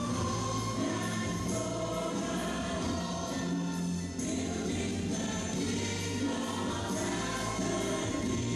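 A choir of several voices singing a gospel-style worship song with band accompaniment, played back over a hall's loudspeakers.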